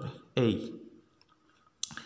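A voice speaking briefly, naming the letter "A", then a single sharp click near the end.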